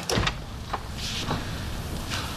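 A door shutting with a single thump, followed by a few faint knocks over low room noise.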